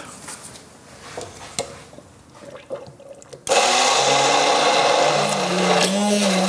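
Handheld immersion blender switched on about three and a half seconds in, then running steadily as it purées a tomato and tahini sauce in a tall beaker. Before it starts, a few faint clicks of handling.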